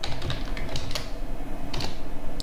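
Typing on a computer keyboard: a short run of keystrokes, with a louder stroke near the end as the Enter key is pressed.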